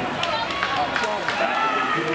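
Spectators at a swim meet shouting and cheering, many voices overlapping, with a long drawn-out shout starting in the second half.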